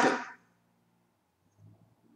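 A man's voice ending a spoken word, then a pause of near silence with only faint room hum.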